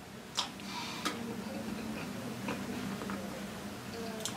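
A person eating a hard tamarind candy: faint mouth sounds with a couple of sharp clicks about half a second and a second in, then a few fainter ticks, over a steady low hum.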